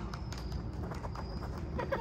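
Quick running footsteps and ball touches on artificial turf, a string of short, irregular taps over a steady low background rumble.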